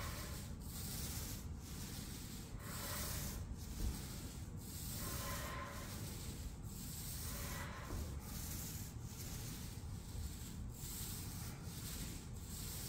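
Paint roller on an extension pole rolling paint across a ceiling: a rubbing swish in repeated back-and-forth strokes, about one a second.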